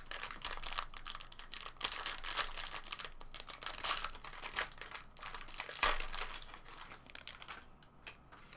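Shiny trading-card pack wrapper crinkling and tearing as it is handled and opened by hand, in irregular flurries that die down near the end.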